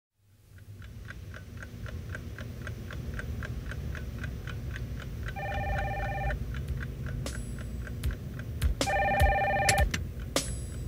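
A desk telephone ringing twice, each ring about a second long, over a steady ticking like a clock and a low hum, all fading in at the start.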